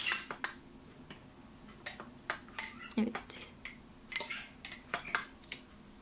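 Light, irregular clinks and taps of a metal fork and a glass jar against a ceramic plate, as sun-dried tomatoes in oil are tipped out of the jar and spread with the fork.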